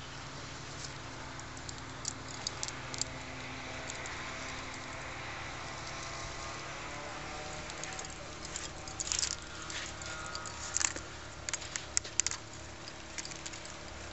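Quiet pebble-beach ambience: a steady low hiss with scattered small clicks and rattles, more frequent in the second half.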